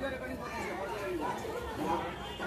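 People talking at a distance, several voices chattering indistinctly.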